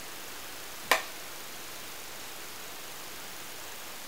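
Steady faint hiss of room tone, with a single short click about a second in.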